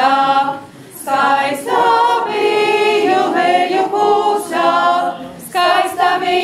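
Women's folk choir singing a Latvian folk song unaccompanied, several voices together, with a short pause for breath between phrases about a second in and another shortly before the end.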